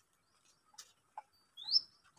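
A bird's single short chirp near the end, a quick rising whistle, after two faint clicks.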